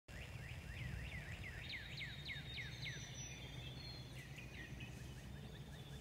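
A songbird singing a quick run of descending whistled notes, about four a second, for the first three seconds, followed by a few fainter notes, over a steady low outdoor rumble.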